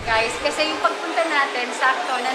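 A woman talking over a steady hiss of background noise.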